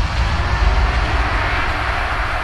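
A steady, wind-like rushing noise with no beat under it, growing brighter toward the end.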